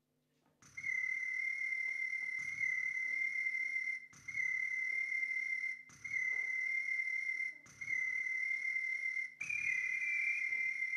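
A high, steady whistle-like tone starts about half a second in and is held in phrases of a second and a half or so, broken by short gaps, each phrase opening with a soft low thump. A second, slightly higher tone joins near the end.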